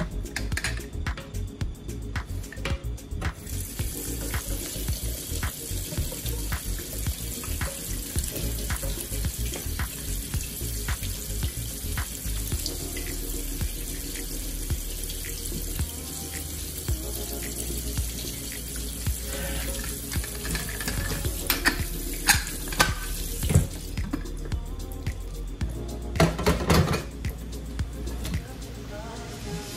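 Cold tap water running onto the lid of an aluminium pressure cooker in a stainless steel sink, cooling it so that the pressure drops and it can be opened. The water stops near the end, and then there are a few louder metallic knocks as the cooker's lid is handled.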